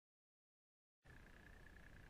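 Near silence: nothing at all for about the first second, then faint recording hiss with a thin, steady high tone underneath.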